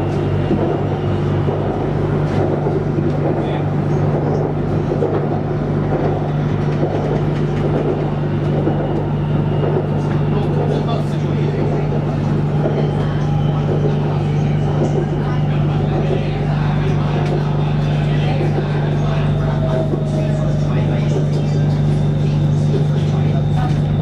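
Interior sound of a BTS Skytrain car running along the elevated track: a steady low hum with a constant rumbling wash of wheel and track noise.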